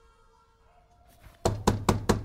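Rapid knocking on a wooden door, about four knocks a second, starting about one and a half seconds in after a faint, fading music note.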